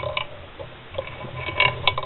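A few light metallic clicks from a Piaggio Ciao Px moped crankshaft being turned by hand in its aluminium crankcase half. The crank is turning easily, without binding.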